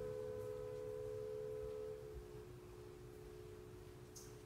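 Music from an opera gala LP on a turntable: a single long held note that stops about two seconds in, leaving a quieter, slightly lower held note.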